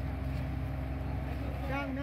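Hydraulic excavator's diesel engine running steadily at idle close by, with people's voices faintly over it.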